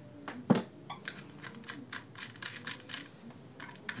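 Small metal accessories and the plastic body of an electric planer being handled and fitted together: one sharp knock about half a second in, then a run of light clicks and taps.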